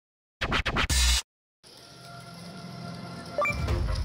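A short record-scratch sound effect about half a second in, lasting under a second. After a brief silence, background music fades in and grows louder.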